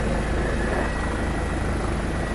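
Steady drone of a police helicopter's engine and rotor, with a faint steady high whine above it.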